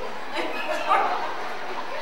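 A woman's voice through a microphone in short, wordless vocal sounds, breaking into a laugh.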